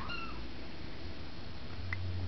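A kitten gives one short, high mew just after the start, falling slightly in pitch. A sharp click follows near the end.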